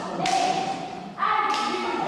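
Group of voices singing short, held phrases in a rehearsal hall, each phrase starting on a sharp thump. There are two such phrases.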